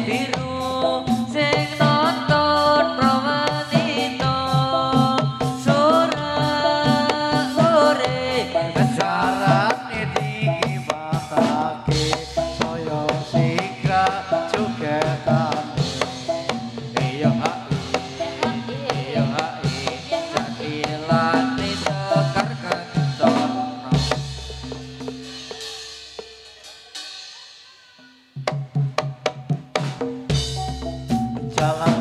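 Javanese gamelan accompaniment for jathilan dance: kendang hand drums beating a quick rhythm under a repeating metallophone melody. The music fades away over the last few seconds, then starts again suddenly just before the end.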